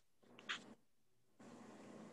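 Near silence: faint room tone on a video call, with one brief faint high-pitched sound about half a second in.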